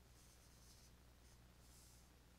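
Near silence with the faint scratch of a stylus on a drawing tablet, a few short strokes, over a low steady electrical hum.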